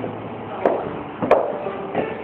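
Three sharp thuds, roughly two-thirds of a second apart, the middle one the loudest, over a faint steady hum.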